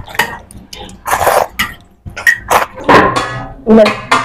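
Human vocal sounds rather than words: short breathy noises, then pitched cries, ending in a loud held shout near the end.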